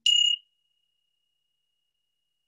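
A meditation bell struck once, giving one clear, high ringing tone that fades slowly. It marks the end of a mindfulness breathing practice.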